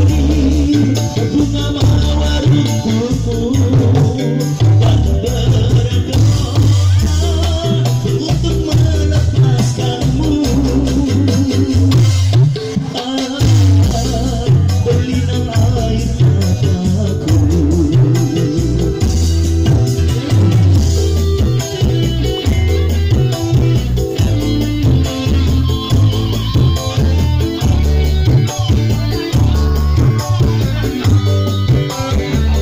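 Live band playing a song through a loud PA: electronic keyboard and electric guitar over a strong, regular bass beat, with a singer's voice at times.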